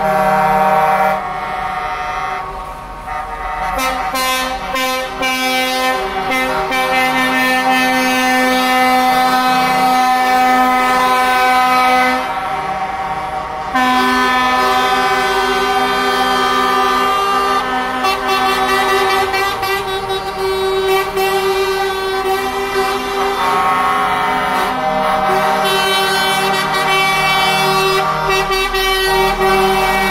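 Several truck air horns blaring together in long, overlapping held blasts at different pitches, sounded continuously by a passing convoy of lorries in salute. The horns thin out briefly about twelve seconds in, then come back at full strength.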